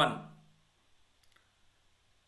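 A man's voice finishing a word and fading out, followed by near silence with a couple of faint, short clicks about halfway through.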